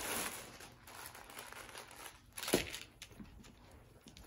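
Clear plastic poly bag crinkling as a pair of pants is pulled out of it, with one sharper, louder rustle about two and a half seconds in.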